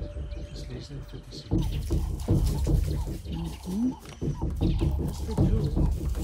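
Indistinct murmuring and low exclamations from onlookers, over background music.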